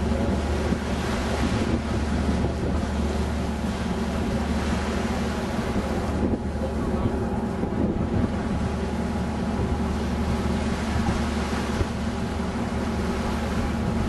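A boat's engine drones steadily, with wind buffeting the microphone on the open deck and a wash of noise from air and water.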